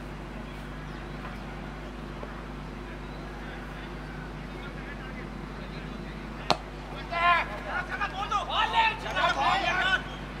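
A single sharp crack of a cricket bat hitting the ball, followed about half a second later by roughly three seconds of loud shouted calls from players as the batsmen run.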